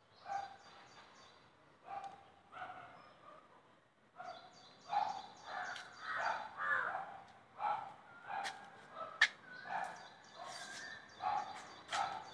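Repeated short animal calls, about one every half second to second and busier in the second half, with a few sharp clicks, the loudest about three-quarters of the way through.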